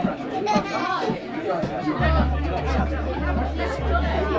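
A live acoustic string band with banjo, acoustic guitar and double bass, mixed with voices in the room. A deep, sustained low bass sound comes in about halfway through.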